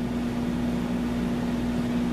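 A steady, low, single-pitched hum over an even hiss, with no speech.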